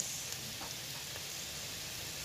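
Minced beef in a little sauce sizzling steadily in a stainless steel frying pan.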